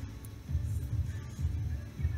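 Background music with repeating deep bass notes and faint held higher tones.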